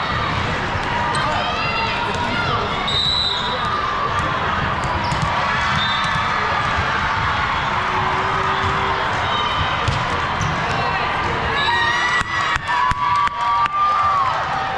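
Gym sound of a volleyball match: sneakers squeaking on the court floor, with players and spectators calling out. Near the end comes a quick run of about six sharp smacks.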